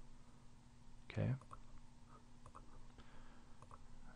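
Faint, scattered clicks of a computer mouse as the address bar is right-clicked and a browser tab is switched, with one short spoken "okay" about a second in.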